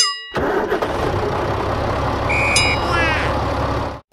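Cartoon tractor engine sound effect, starting up and running steadily. A short high beep sounds about two and a half seconds in, followed by a brief falling whistle.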